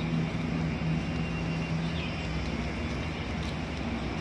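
A vehicle engine running steadily: a continuous low hum with an even background noise.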